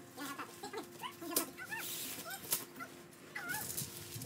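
An animal's short, high chirping calls, each rising and falling, repeated many times, with a few sharp rustles or knocks.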